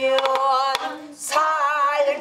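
A woman singing pansori in a wavering voice, with a brief break just after halfway, over a few light stick taps on a buk barrel drum.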